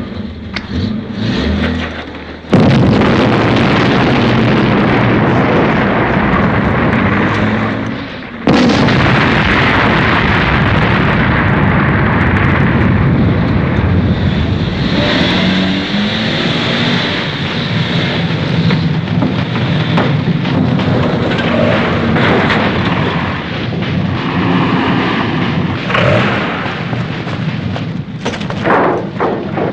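Film battle sounds of explosions: a sudden loud blast about two and a half seconds in and another about eight and a half seconds in, each followed by continuous heavy rumbling noise.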